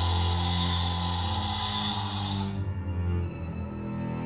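Tense, scary background music with sustained low notes; a high hazy layer over it drops out about two and a half seconds in.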